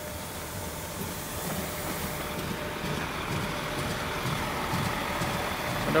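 A Nordjyske Jernbaner Alstom Coradia LINT diesel multiple unit running in along the platform, its engine and running noise a steady rumble that grows slowly louder as it comes close.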